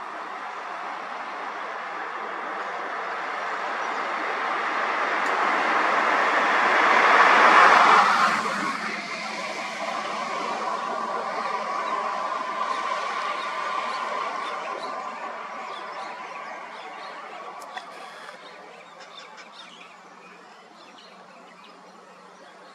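Road traffic: a vehicle passing close by, building to its loudest about seven to eight seconds in and then dropping away quickly, followed by engines running more quietly and fading toward the end.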